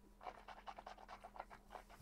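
Near silence, with a quick, uneven run of faint soft clicks and rustles from a person savouring a sip of bourbon, his hand at his mouth and chin.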